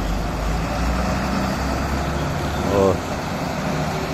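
Steady low rumble of road traffic: vehicle engines on the road, with motorcycles passing. A short burst of a person's voice cuts in just under three seconds in.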